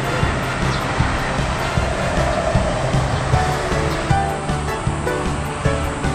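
Background music with a steady beat; held melodic notes come in about four seconds in, over a wash of noise.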